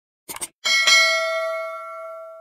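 Subscribe-button sound effects: a couple of quick mouse clicks, then a bright bell ding struck about half a second in that rings on and slowly fades.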